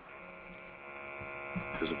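Steady electric hum of a GX-6000 portable gas monitor's internal sample pump running after power-on, a stack of even, unchanging tones that grows slightly louder.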